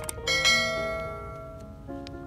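A bright bell chime sound effect struck once about a third of a second in and ringing out over a second and a half, the notification-bell ding of a subscribe-button animation, over steady background music, with a couple of light clicks just before it.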